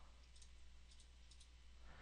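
Near silence: a few faint computer mouse clicks over a low steady hum.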